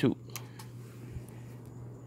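Two faint clicks, about a third and two-thirds of a second in, from a thumb pressing the plastic push-button switch on a small USB desk fan.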